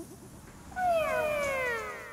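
Children's voices making several high, overlapping wails that each slide down in pitch. They start about three quarters of a second in and tail off near the end.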